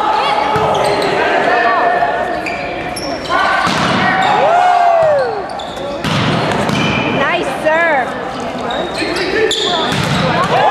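Volleyball rally on a hardwood gym floor: sneakers squeaking in short curving chirps, the ball struck and bouncing with sharp knocks, and players shouting calls.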